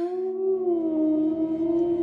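Mournful soundtrack music: one long held note that wavers slightly in pitch, like a sustained wail.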